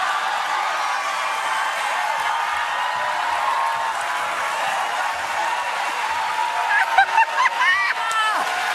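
Studio audience laughing, cheering and applauding together as one steady wash of crowd noise, with whoops in it. Near the end a woman's laughter and voice rise over it.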